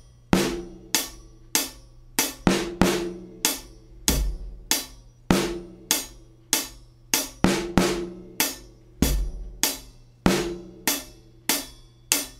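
Slow drum-kit groove: a steady pattern of hi-hat strokes about every 0.6 s with a bass drum once every bar, and snare hits on beat two plus a syncopated snare on the last sixteenth of beat three, just ahead of beat four. The kit is a Taye GoKit with a UFIP hi-hat and a cloth-muffled snare.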